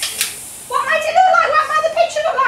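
A single click from a toy camera's shutter button, then children's voices for most of the rest.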